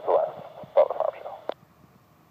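The last words of a pilot's radio call on an airband radio, heard through the receiver's speaker, cutting off abruptly with a click about one and a half seconds in.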